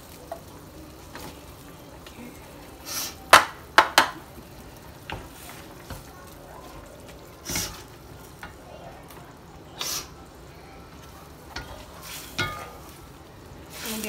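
A wooden spatula stirring greens into a simmering broth in a stainless steel wok, with a few sharp knocks against the pan, the loudest two about three and a half seconds in, over a steady faint hiss from the pot.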